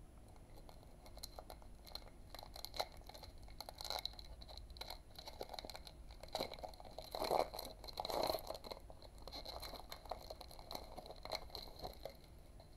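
The foil wrapper of a Pokémon trading card booster pack crinkles and tears as it is opened by hand. The crinkling is louder about seven to eight seconds in.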